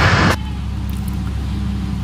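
A brief swoosh right at the start, then a steady low rumble that cuts off suddenly at the end.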